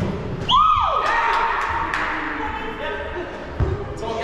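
A player's high-pitched shout, rising and then held for about a second, over the chatter of players in a large sports hall. A ball thuds near the end.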